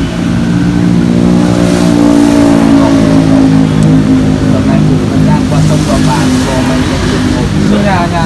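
A motor vehicle engine running close by with a steady low hum, its pitch dipping slightly about halfway through.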